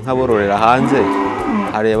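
Dairy cow mooing: one long, loud call of about a second and a half that drops in pitch at the end, with the next call starting just before the close.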